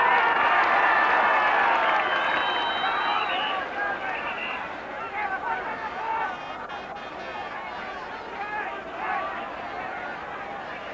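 Stadium crowd at a Gaelic football match, many voices shouting at once. It is loudest in the first few seconds and then settles into a lower babble.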